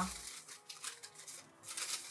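Quiet rustling and crinkling of paper sewing-pattern pieces being unfolded and handled, getting louder near the end.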